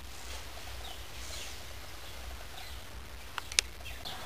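Quiet background with a steady low hum, a few faint high chirps, and two sharp clicks close together about three and a half seconds in.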